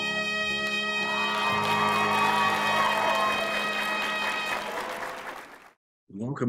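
Trumpet holding a long final note over its backing, with a noisy wash rising under it about a second in; the sound fades out shortly before the end.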